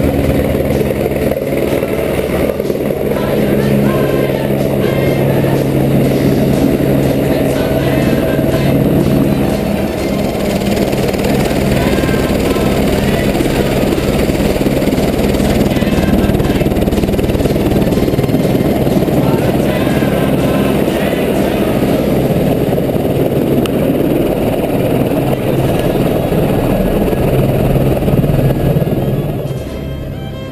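A light helicopter's rotor and engine, loud and close, as it comes in, settles on the pad and keeps its rotor turning on the ground. Faint music runs underneath, and the noise drops off just before the end.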